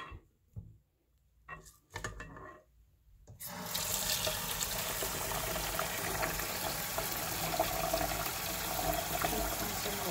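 Tap water running into a rice cooker's inner pot of rice, a steady splashing stream that starts about a third of the way in, for a rinse of the rice before cooking. Before it, a few brief faint sounds.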